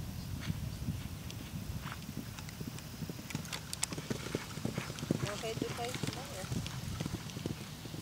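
Hoofbeats of a horse cantering on grass turf, the strikes sharpest around four seconds in as it passes close by.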